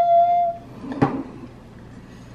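A woman's voice held on one high note, gliding up into it and stopping about half a second in. One sharp click follows about a second in, over a low steady hum.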